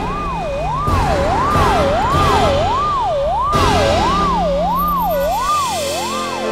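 Ambulance siren wailing, its pitch rising and falling smoothly about one and a half times a second, over a low vehicle rumble that cuts off near the end.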